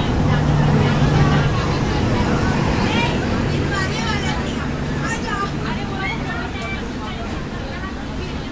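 Passenger coach rolling slowly during shunting, a low rumble with a steady low hum, with people's voices talking over it; the whole sound slowly fades.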